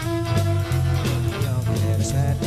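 Live rockabilly band playing an instrumental stretch: electric guitar over a bass line and a steady drum beat.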